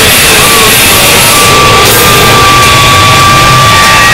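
Harsh noise music: a dense, very loud wall of distorted noise. A steady high whining tone comes in about a second in and holds to the end.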